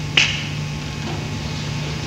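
A single sharp click just after the start, over a steady low hum.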